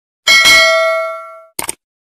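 Notification-bell ding sound effect, a single bright ring that dies away over about a second, followed near the end by a quick double mouse-click sound effect.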